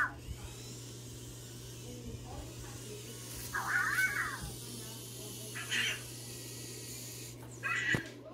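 Anki Cosmo toy robot making its chirpy electronic vocal sounds: four short chirps, the longest about four seconds in, rising and falling in pitch, over a steady low hum.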